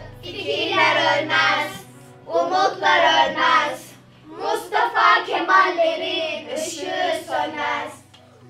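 A group of children singing together in three phrases with short breaks between them, over a steady background music track.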